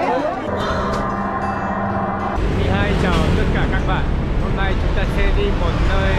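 A vehicle engine running with people talking over it; the engine rumble grows heavier about two and a half seconds in.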